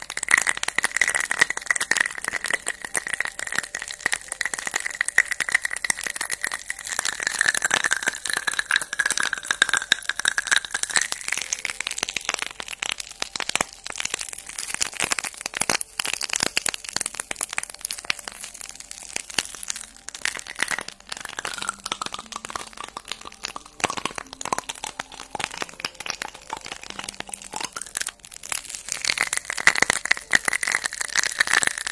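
Dense, continuous crackling and clicking of long acrylic fingernails tapping and scratching right up against a furry windscreen microphone.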